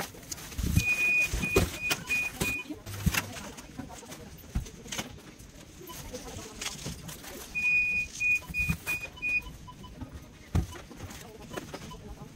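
Groceries being set down and shifted on a supermarket checkout conveyor belt, with irregular knocks and bumps. Twice, an electronic beeper sounds a high pattern of one long beep followed by four short ones, the two patterns about seven seconds apart.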